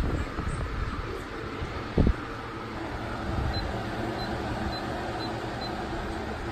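Holmes Blizzard power fan running with a steady whir. There is a thump about two seconds in. In the second half, five short high beeps come about half a second apart, as the fan's controls take presses from its remote.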